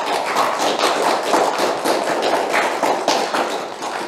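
Applause, a dense run of hand claps that holds steady and begins to fade near the end.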